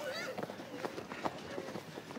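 Footsteps of a group of people walking on a dirt street, irregular and overlapping, with a brief voice near the start.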